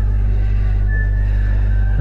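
Steady low electrical hum on the recording, with a short faint high tone about a second in.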